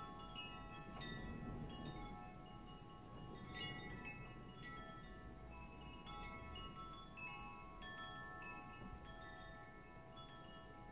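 Soft chimes ringing, a new note struck about every second, the notes overlapping and dying away slowly.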